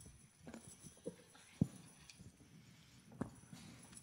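A quiet pause broken by a few scattered knocks and clicks, the loudest about one and a half seconds in and another near three seconds: small handling noises as musicians ready their instruments.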